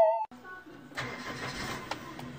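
A wavering, theremin-like electronic tone cuts off, then a car engine idles under a steady noise, with a knock about a second in and another just before the end.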